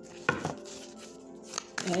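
Tarot cards being handled on a table: a sharp tap about a quarter second in, then a few lighter taps near the end, with faint steady background music underneath.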